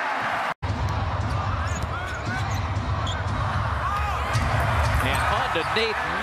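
Basketball being dribbled on a hardwood arena court under crowd noise, with short high squeaks. The sound cuts out for a moment about half a second in.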